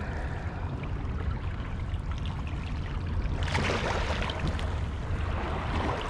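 Current of a muddy, flooded river rushing past the bank, a steady noise, with a brief louder hiss about three and a half seconds in.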